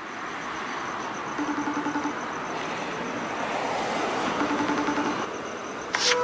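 Steady street traffic noise, with a phone's video-call ringing tone pulsing twice, about three seconds apart.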